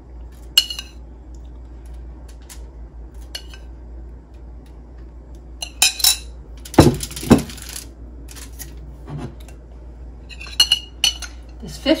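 A metal spoon clinking against a ceramic bowl as marinade is spooned out and the spoon is set down in the bowl: scattered sharp clinks. About seven seconds in comes a louder burst of clatter and rustling.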